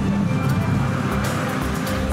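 Crowd chatter with music and a low rumble as an animatronic statue and fountain show starts.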